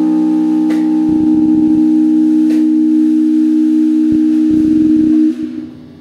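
A live band's final held note: one steady sustained tone with overtones, over a couple of soft low drum rumbles. It stops a little after five seconds in and dies away.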